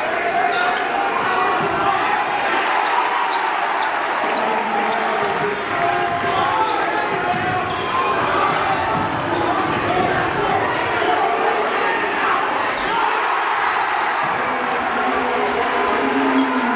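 Live game sound in a gym: a basketball being dribbled on the hardwood court over the steady, indistinct voices of the crowd, echoing in the hall.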